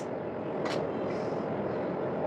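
A small plastic eyeshadow palette being unpacked and opened: one sharp click a little under a second in, then a faint rustle, over a steady background hiss.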